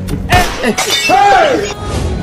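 A sudden shattering crash about a third of a second in, followed by a voice whose pitch glides up and down, over background music.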